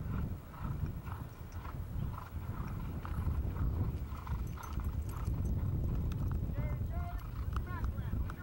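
Hoofbeats of polo ponies galloping on turf, uneven and continuous, with distant voices and a few short falling chirps near the end.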